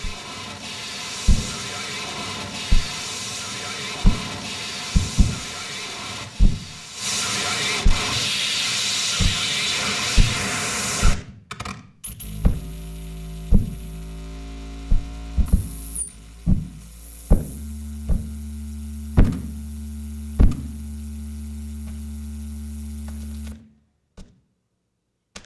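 Electronic noise music played on a mixing desk and turntables: a dense hissing, humming texture punctuated by sharp clicks about once a second. About eleven seconds in it breaks off abruptly and gives way to a low steady hum with a few held tones and the same clicks, which stops suddenly near the end.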